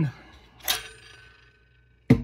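A single sharp plastic click about two-thirds of a second in, as a BK BKR5000 portable radio is pulled out of the front pocket of a BK dual-bay desktop charger. A brief faint rattle follows.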